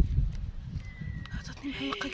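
Uneven low rumbling and a few dull knocks on the microphone for the first second and a half, then a woman starts speaking near the end.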